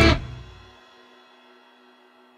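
The final chord of a rock song: the full band with drums and bass stops short about a quarter second in. A chord on a Stratocaster-style electric guitar rings on alone and slowly fades away.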